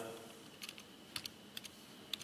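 Several faint, short clicks of keys on a computer as the lecture slides are stepped through, in irregular pairs and singles.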